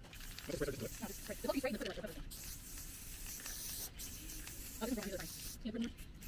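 Krylon ColorMaxx metallic gold aerosol spray paint cans hissing as frames are sprayed, in a few long sprays with short breaks about two and four seconds in.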